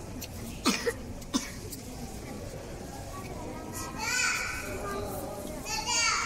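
Visitors' voices, including high-pitched children's voices rising around four seconds in and again near the end, over steady crowd noise. A few sharp clicks come in the first second and a half.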